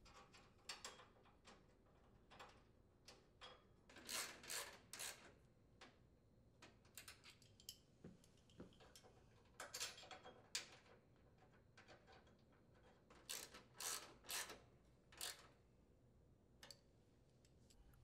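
Faint clicking of a ratchet socket wrench tightening the steering bracket mounting bolts on a riding mower. The ratcheting comes in three spells of short bursts: about four seconds in, around ten seconds, and again from about thirteen to fifteen seconds. Light metal handling clicks fall between them.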